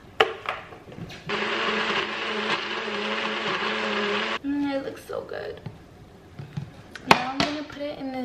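Blender running for about three seconds as it blends a smoothie, a steady loud whir with a low motor hum that starts about a second in and cuts off sharply. Clicks and knocks from handling the blender cup come before and after, with a sharp click near the end.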